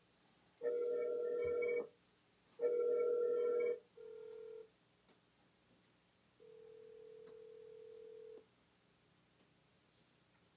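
Outgoing phone call ringing through the Kove Commuter 2 Bluetooth speaker. First come the speaker's own ring, three pitched tones of about a second each, then a short fainter beep. After a pause the regular ringback follows, one plain tone about two seconds long.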